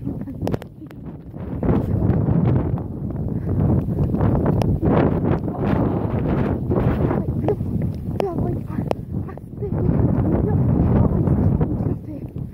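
Loud handling noise: jacket fabric rubbing and brushing over the camera's microphone as it is carried on the move, with some wind on the microphone.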